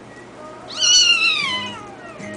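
A kitten gives one loud meow, about a second long, that falls in pitch as two kittens play-fight.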